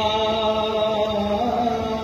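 A man's voice chanting a slow devotional melody in long held notes, the pitch stepping from one held note to the next.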